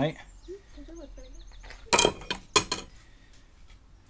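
Aluminum soft-plastic bait injection mold plates clanking: two sharp metallic clinks about halfway through, roughly half a second apart, as the mold is handled after a pour.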